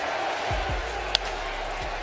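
Ballpark crowd murmur with one sharp crack a little after a second in: the bat meeting a pitched baseball on Cabrera's swing. A low hum sets in about half a second in.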